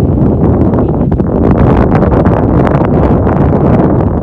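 Wind buffeting the microphone: a loud, steady rumbling noise with small gusty crackles.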